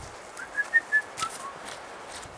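A few short whistled notes, the first ones high and the last two stepping lower in pitch, with a few faint clicks underneath.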